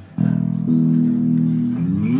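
Electric bass guitar being played: a note is held for about a second and a half, then slides up in pitch near the end.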